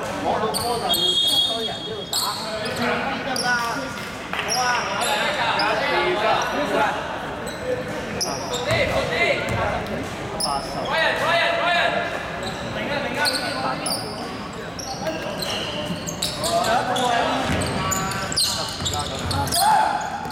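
Basketball game sounds in an echoing sports hall: a ball bouncing on the wooden court, short high squeaks of sneakers, and players' voices calling out indistinctly.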